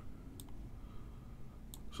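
Faint clicks at a computer: a single click about half a second in, then three quick clicks near the end.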